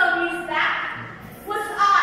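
Speech only: a girl reciting a declamation piece in short, expressive phrases.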